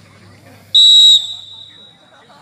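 Referee's whistle blown once, short and loud, about three quarters of a second in, then trailing off: the signal that the penalty kick may be taken. Spectators talk quietly underneath.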